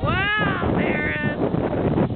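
Two high-pitched wordless shouts from a spectator: the first rises and falls, and the second, higher, is held briefly about a second in.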